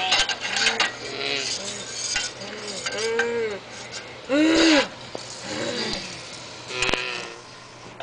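A voice makes a string of short, wordless cries, each rising and falling in pitch, about one every half second to second. Between them come sharp clinks and scrapes of a metal spatula in a stainless steel frying pan.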